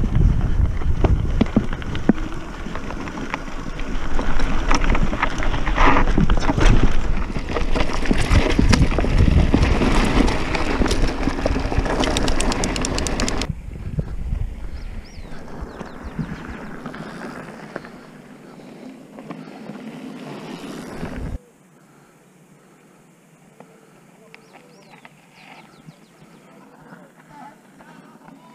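Mountain bike rolling fast down a loose, rocky dirt trail: tyres crunching over gravel, the frame and parts rattling, and wind buffeting the handlebar camera's microphone. About halfway through it cuts off suddenly to a much quieter open-air background with a few faint high chirps.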